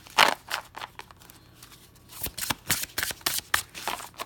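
An Animal Totem Tarot deck being shuffled by hand: an irregular run of short snaps and clicks as the cards are slid and tapped between the hands, the sharpest about a quarter second in.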